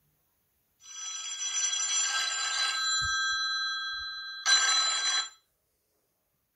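Samsung Galaxy A-series smartphone ringing with an incoming call: the ringtone plays from about a second in, breaks off briefly near the end, resumes, then stops. The call is a test of the repaired phone.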